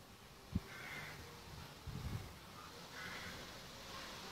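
Two short harsh animal calls, about two seconds apart, with a low knock about half a second in.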